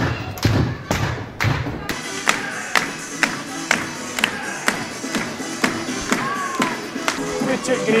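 Music with a heavy beat for the first two seconds, then hand clapping in a steady rhythm of about two claps a second, with voices behind it.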